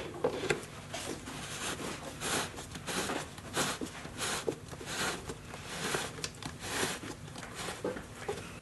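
3D-printed plastic cap being screwed by hand onto a plastic exhaust duct fitting: a run of short rasping scrapes of plastic thread on thread, about two a second, one for each twist of the hand.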